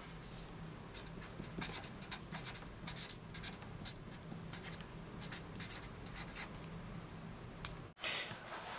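Marker pen writing on paper: a quick run of short strokes, one per letter stroke, over a faint steady low hum.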